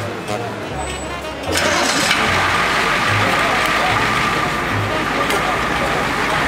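Street noise with voices, then about a second and a half in a vehicle engine close by starts and keeps running steadily, with a faint steady hum over it.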